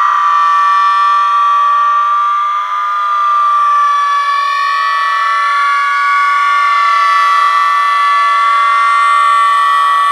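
Several boys screaming long, high notes together without a break, one pitch held steady while the others waver up and down.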